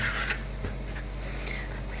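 Hands mixing a moist vermicelli-and-fish pastilla filling in a bowl: faint, soft mixing sounds over a steady low hum.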